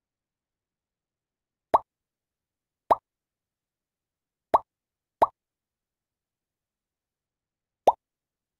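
Five short, identical pop sound effects at uneven intervals, two close together near the middle: the Quizizz lobby's join sound, one for each player who enters the game.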